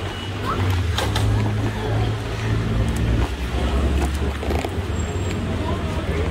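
Busy city street ambience: a steady low rumble of traffic with indistinct voices of passers-by.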